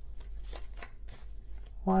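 Tarot deck being shuffled by hand: a quick, irregular run of soft card clicks and riffles.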